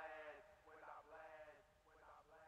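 Faint echo of a man's rapped vocal phrase repeating about once a second, each repeat quieter as it fades out.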